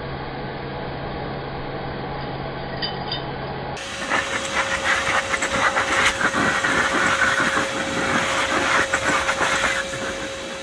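Handheld blower running steadily, its air rushing from the nozzle. About four seconds in the sound turns abruptly louder and brighter, with a steady whine and many sharp clicks over the rush.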